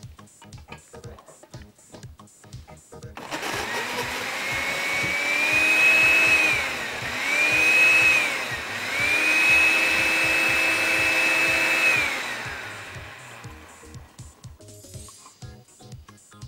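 Countertop blender puréeing strawberries, starting about three seconds in. It runs in three bursts, its motor whine rising, dipping briefly between bursts, then winding down. Background music with a steady beat plays before and after it.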